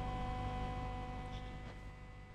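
Small incubator fan motor running: a steady low hum with a faint thin whine, fading slightly toward the end, with a couple of faint taps.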